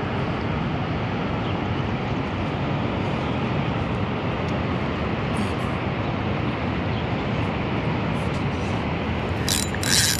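A steady, even roar of outdoor background noise, with a few sharp clicks near the end.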